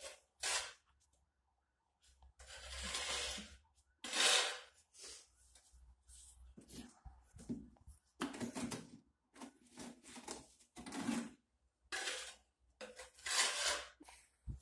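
Floor tiling work: wet mortar scooped and scraped in a plastic bucket and ceramic tiles handled and set down, giving irregular scrapes and knocks with short pauses between.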